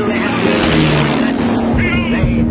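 Aircraft flying past: a rushing noise that swells and fades over about a second and a half, laid over background music with a low held note.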